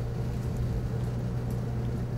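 Steady low hum of background machinery, even and unchanging, with no distinct handling sounds standing out above it.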